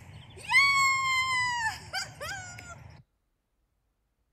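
A dog gives one long high-pitched whine, rising at the start and falling away at the end, then three short falling yelps, over a low steady rumble. The sound cuts off abruptly about three seconds in.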